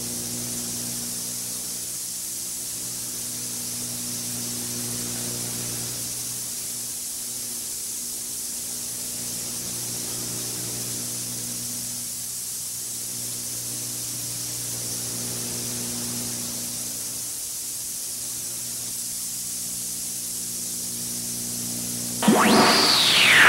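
Steady hiss with a low electrical hum underneath. It is the background noise of an analog off-air TV recording while the broadcast sound is silent.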